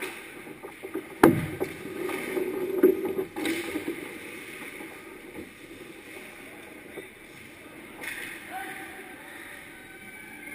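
Hockey skates scraping and carving on the ice right at the goal, with sharp knocks of sticks and puck, the loudest a little over a second in, during a scramble in front of the net.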